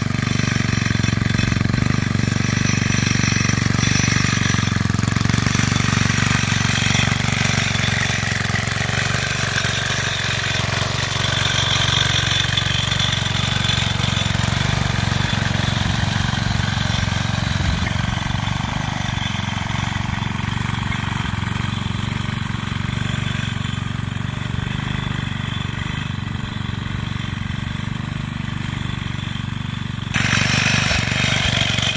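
A David Bradley Super 3 walk-behind tractor, fitted with a replacement small engine, running steadily as it pulls a shovel cultivator through the soil between onion rows.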